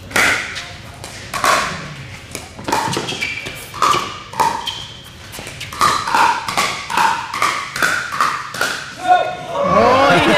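Pickleball rally: paddles striking the hollow plastic ball in sharp pops, with ball bounces on the court, about a dozen in all. The strokes come about once a second at first and quicken after about six seconds, as the players trade short shots at the net.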